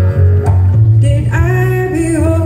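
A live band playing guitars and bass, with a voice singing over them in the second half.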